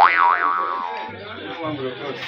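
A cartoon 'boing' sound effect: a sudden twangy, springy tone whose pitch wobbles up and down twice, then fades away over about a second.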